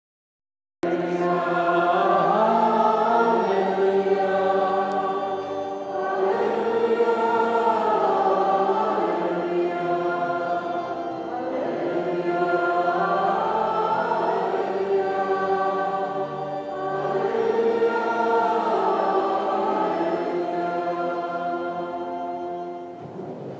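Church choir singing in long phrases of about five seconds each, with short breaths between them, starting about a second in. This is the sung Gospel acclamation before the Gospel is read.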